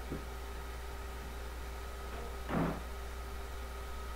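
A door slamming shut once, about two and a half seconds in, over a steady low hum on an old film soundtrack.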